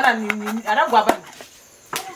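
A voice speaking for about a second, then a sharp knock about a second in and another near the end: a knife cutting onion in a bowl.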